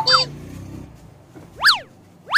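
A comic edited-in sound effect: a loud whistle-like tone that sweeps quickly up in pitch and straight back down, about a second and a half in. A short falling glide comes at the very start.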